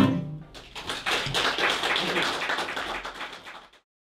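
A last loud guitar strum at the very start, then audience applause, which stops suddenly near the end.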